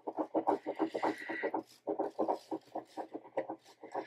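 Uni-ball Signo gel pen colouring in a paper sticker with quick back-and-forth scratching strokes, about four or five a second, growing sparser and fainter in the second half.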